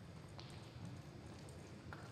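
Reining horse galloping on soft arena dirt, its hoofbeats faint and dull, with two sharp clicks, one about a third of the way in and one near the end.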